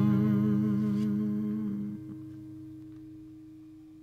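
The final chord of an acoustic guitar ringing out and fading away at the end of the song. A wavering held note stops about two seconds in, and a single tone rings on as it dies away.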